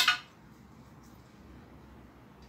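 A single sharp metallic clink at the very start as a small hand-made metal key strikes the table leg's metal wing-nut lock while it is being loosened.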